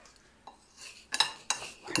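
Metal spoon stirring small dry pasta (langues d'oiseau) with oil on a ceramic plate, clinking and scraping against the plate a few times in the second half.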